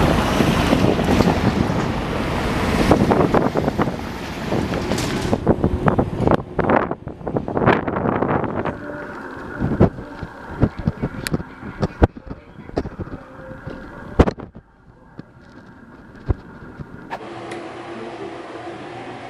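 Wind buffeting the microphone over street traffic for the first few seconds, then a run of sharp clicks and rustles as a plastic shopping bag is handled, fading to a quiet background near the end.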